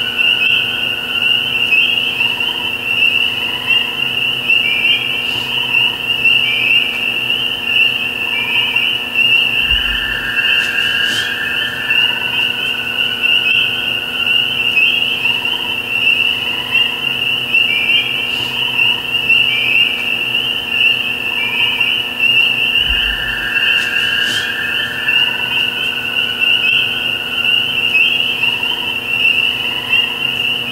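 A chorus of frogs calling: a dense, continuous high peeping, with lower calls repeating every second or so underneath. There are two brief low thumps, one about a third of the way in and one near two-thirds.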